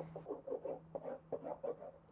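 Glue being squeezed from a plastic squeeze bottle onto a cardboard box lid: a run of short, soft sounds, several a second, fading near the end.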